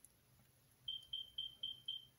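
Five short, high-pitched electronic beeps in quick succession, about four a second, starting about a second in.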